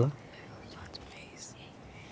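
A spoken word ends right at the start, then a quiet pause with faint whispering.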